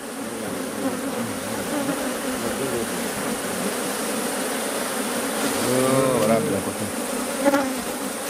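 Honeybee colony buzzing in a steady drone over the opened top bars of a Kenyan top-bar hive, the bees stirred up by the opening and the smoke.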